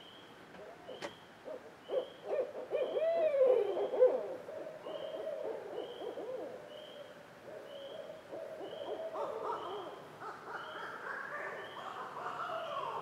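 Several barred owls calling over one another in a caterwauling chorus: a tangle of overlapping hoots and wild, swooping cackles. The calls peak a few seconds in and turn higher-pitched and more excited toward the end.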